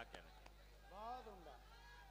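Near silence, with a faint short spoken word at the start and a faint drawn-out voice a little after a second in.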